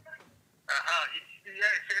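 A man's voice over a telephone line begins speaking about two thirds of a second in, after a short pause; the sound is thin and narrow.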